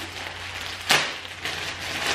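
Rustling and crinkling of a T-shirt and its plastic packaging being handled, with one sharp crackle about a second in, over a steady low hum.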